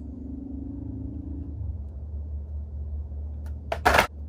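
Steady low room hum, then near the end a brief loud clatter as a blister-carded Hot Wheels car is dropped into a plastic laundry basket.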